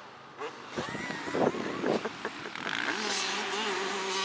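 Distant dirt bike engines on a motocross track, their note rising and falling and then holding steadier near the end, with a few knocks from the camera being handled in the first half.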